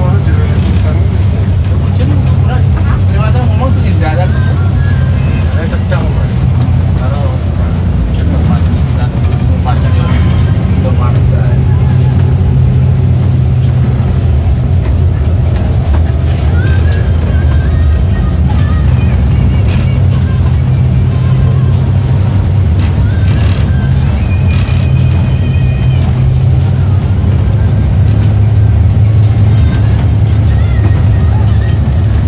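Steady low drone of a Mercedes-Benz 1626 coach's diesel engine and road noise, heard from inside the cabin on the move. Music and indistinct voices run over it.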